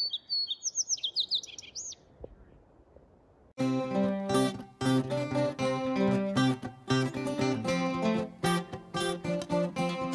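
A small bird chirping, a quick series of short rising-and-falling high notes for about two seconds. After a short pause, acoustic guitar music with a steady strummed beat starts about three and a half seconds in and carries on.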